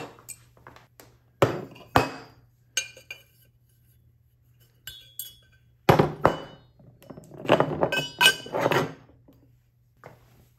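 Things set down on a plastic workbench: a few separate knocks in the first seconds, then lengths of copper pipe clinking and knocking against each other and the bench with a brief metallic ring, clattering several times over the second half.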